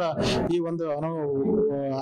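A man talking into a handheld microphone: speech only.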